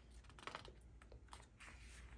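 Near silence with a few faint, soft ticks and rustles of a paper notebook page being handled and turned.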